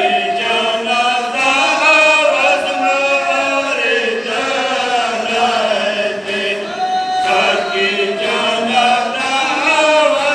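Male voices chanting a Pashto matam lament (noha) in a slow, wavering, unbroken melody.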